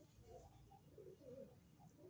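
Faint pigeon cooing, a string of short low wavering notes.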